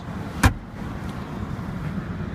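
Nissan Murano glove box latch clicking once, a sharp knock about half a second in, over a steady low hum in the car cabin.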